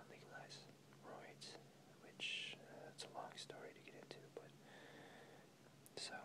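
Quiet whispering, with sharp hissing s-sounds, the longest about two seconds in.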